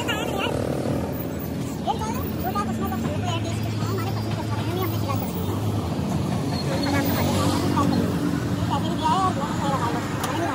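Indistinct voices talking at a roadside food stall over street traffic, with vehicle engines running in the background.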